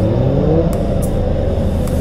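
Motorcycle engine revving, its pitch rising over the first half-second and then running on steadily, with a few brief clicks.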